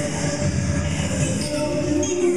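Live-looped vocal music: layered voices form a dense, steady low rumble with a few held tones above it.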